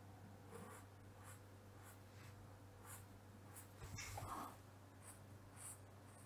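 Faint scratching of a fibre-tip pen drawing lines on paper: a handful of short, soft strokes, a slightly louder one about four seconds in, over a low steady hum.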